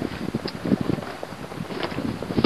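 Wind noise on the microphone with irregular light knocks and taps on a boat's deck.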